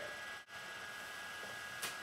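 Quiet room tone: a steady hiss with a faint high-pitched electrical whine. It drops out for an instant about half a second in, at an edit cut.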